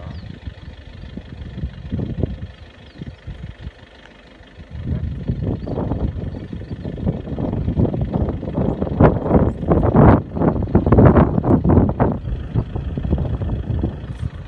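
Wind buffeting the phone's microphone: an irregular low rumble that grows much stronger and gustier about five seconds in.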